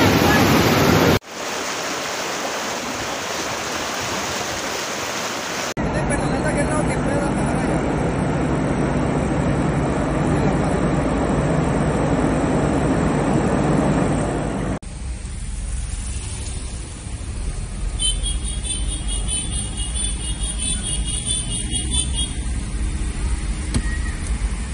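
Steady loud rushing of fast-flowing floodwater, changing abruptly where one recording is cut to the next. In the last part it gives way to the running engine and road noise of a car driving slowly, with a high repeated pulsing for a few seconds.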